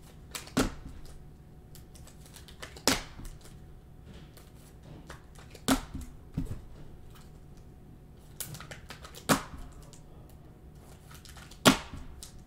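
Rigid plastic trading-card holders clacking as they are handled and set down one after another: about six sharp clicks, two to three seconds apart.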